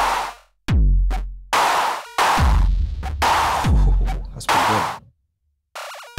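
Electronic drum loop from the Microtonic drum synth, run through an Elektron Analog Heat with its Saturation circuit selected. Deep kicks with a long falling bass tail alternate with bright, noisy snare-like hits, about one hit every three quarters of a second, with a brief gap about five seconds in.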